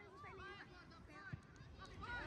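Faint, distant voices of children calling out on the pitch, with one short soft thump about two-thirds of the way through.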